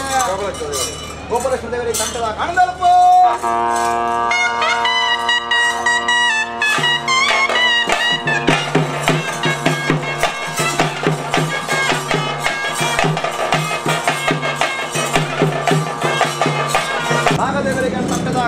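A ritual band of reed pipes and drums: a voice for the first few seconds, then a long, held, wavering pipe melody from about three seconds in. Steady drum strokes on dolu and small drums join it at about eight seconds and carry on with the pipes.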